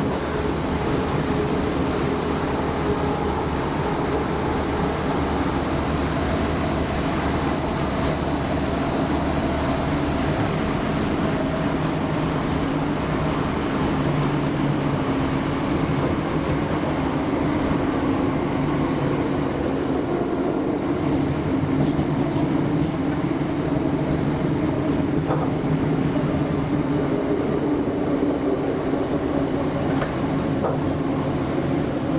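Class 317 electric multiple unit heard from inside the carriage while running: a steady rumble of wheels and body, with a hum and whine from the traction motors and gearing whose tones shift a little in pitch, and a few faint clicks from the track.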